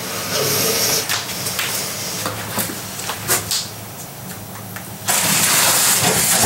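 Moving vehicle heard from inside: a steady low engine hum under a rushing noise, with a few light clicks. About five seconds in, a much louder rushing hiss sets in.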